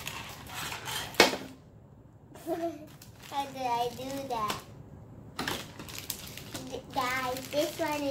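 Plastic packaging wrapper being crinkled and torn open by hand, with one sharp crack about a second in and another burst of crackling a little past the middle.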